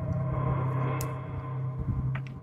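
A steady low droning hum with a ringing tone that swells in the middle, and a single sharp click about a second in.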